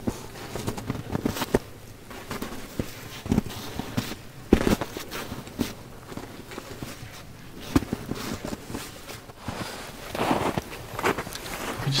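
Footsteps in snow: boots stepping through snow in an uneven walking rhythm.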